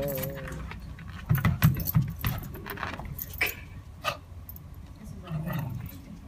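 The last sung note of a song fades out. Then a small dog batting a red suction-cup punching-bag toy on a window gives a quick run of knocks and rattles, then two single knocks.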